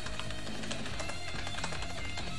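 A quick run of computer keyboard key clicks over steady background music.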